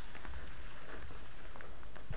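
Low rumble with a few faint clicks: handling noise from a handheld camera being moved.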